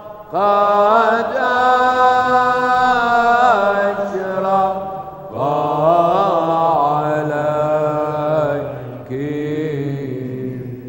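Orthodox liturgical chant in the Byzantine style: a sung line of long held notes with ornamented, wavering turns. It comes in three phrases with short breaks between them, the first starting just after the beginning, the second about halfway and the third near the end.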